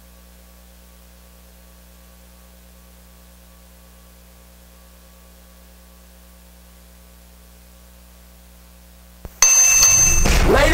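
Steady electrical mains hum, a low buzz made of several even tones. About nine seconds in there is a small click, then loud music starts abruptly.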